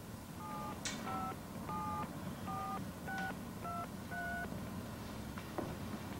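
A touch-tone telephone being dialed: seven short two-tone keypad beeps, about half a second apart, with a sharp click near the start.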